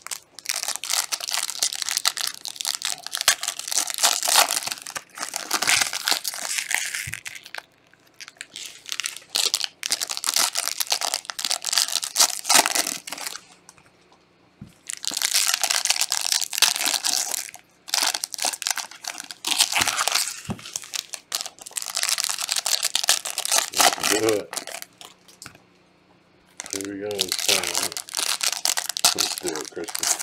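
Foil wrappers of Panini Select soccer trading card packs crinkling and tearing as gloved hands handle and rip them open, in long bursts with short pauses between.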